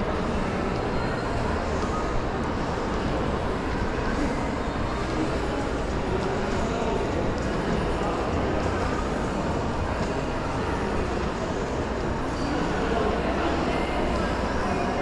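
Steady background noise of a large indoor mall concourse: a continuous low rumble and hiss with no distinct events.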